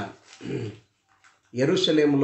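A man's voice preaching: a short sound about half a second in, a brief pause, then speech resumes loudly about one and a half seconds in.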